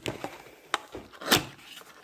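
Cardboard trading-card blaster box being opened by hand: a few sharp clicks and snaps as the flaps and tab are pulled free, the loudest about 1.3 seconds in.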